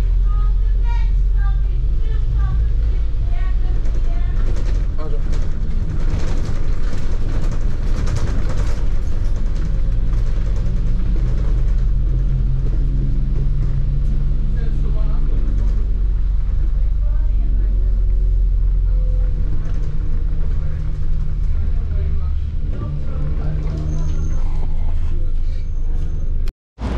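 Open-top double-decker bus driving along a road, its engine running under a heavy low rumble of wind on the microphone, with a steady engine hum through the middle.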